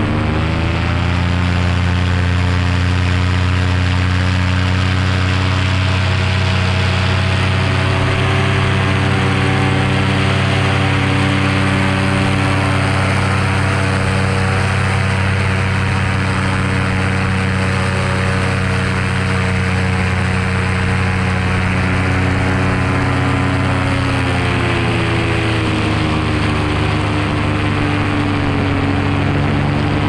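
Paramotor engine and propeller running steadily in flight. The engine revs up just after the start, holds, then is throttled back about three-quarters of the way through and settles to a lower, steady pitch.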